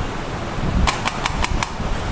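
Five quick, sharp clicks about a second in, some six a second, typical of keys or a mouse button being pressed on a computer. Under them runs a steady room hum with a low thump at the very start.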